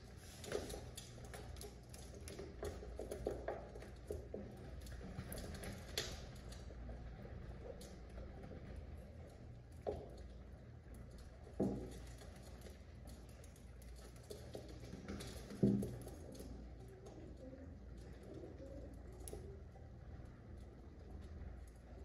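A flock of feral pigeons crowded together, pecking, scuffling and flapping, with cooing; a scatter of small taps and knocks throughout, and a few louder thumps in the middle.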